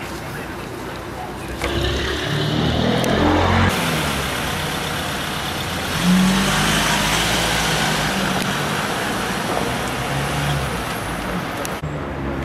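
A Ford Transit van's engine running and moving off, with a broad hiss of vehicle noise that comes in about four seconds in and grows louder at about six seconds.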